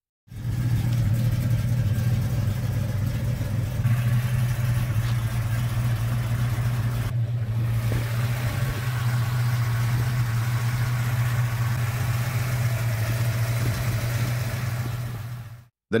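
Classic Mopar V8 engine, presented as a 426 Hemi, idling steadily with an even, low note.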